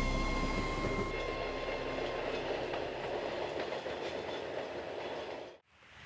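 Rokumon train, a refurbished Series 115 electric multiple unit, passing close by: steady rumble of wheels on the rails that slowly fades as it draws away, cut off just before the end.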